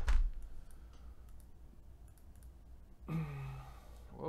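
A thump with sharp clicks right at the start, a few light clicks after it, then a man's short, low, steady hum near the end.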